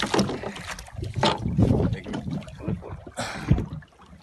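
Water splashing against the side of a small fishing boat, with irregular knocks and bumps on the hull, while a hooked amberjack is being gaffed alongside. A heavy thump comes just before the end.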